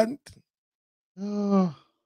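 A man's voice: the end of a spoken phrase, a gap of silence, then one brief held hum or drawn-out syllable at a steady pitch just past the middle.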